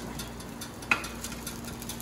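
Metal spatula sliding a pizza pandesal onto a toaster oven's foil-lined tray, with one light clink about a second in, over a faint steady hum.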